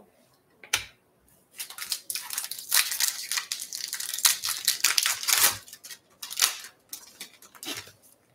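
Foil wrapper of a 2022 Topps Chrome Update card pack being torn open and crinkled by hand. One sharp crackle about a second in, then several seconds of dense crackling tears, then a few lighter crinkles near the end.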